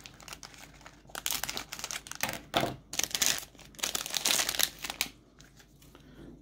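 Plastic Lego minifigure blind bag crinkling in the hands in irregular bursts as it is opened, dying down near the end.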